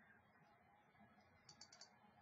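Near silence with a quick run of about four faint computer mouse clicks a little over a second in, placing points of a cut outline.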